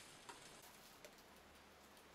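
Near silence: room tone, with two faint ticks.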